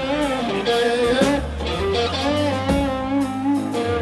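Live blues trio playing: an electric guitar lead with bent, wavering notes over bass guitar and drum kit.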